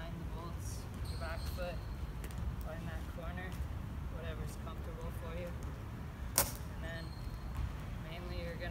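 Low, quiet talking over a steady low rumble, with one sharp knock about six seconds in, the skateboard clacking on the concrete as the rider shifts on it.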